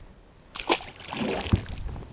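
A released bass splashing into the lake beside the boat about half a second in, followed by water sloshing and a low thump about a second later.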